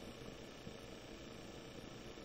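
Almost silent: a faint, steady hiss of room tone.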